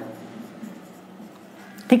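Marker pen writing on a whiteboard: a faint rubbing as a short word is written.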